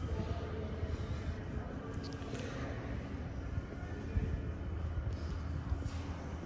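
Steady low rumble of an underground metro platform, with faint steady tones drifting over it and no train in the station.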